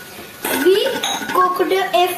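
Steel kitchen bowls and spoons clinking against each other on a counter, starting about half a second in.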